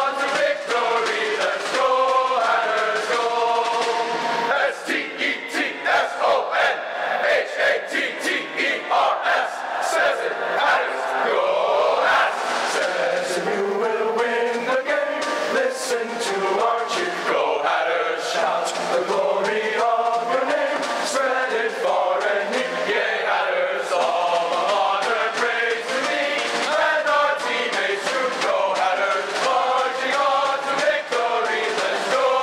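Men's chorus singing the university fight song together, unaccompanied. Through the middle, a run of sharp rhythmic beats goes with the singing.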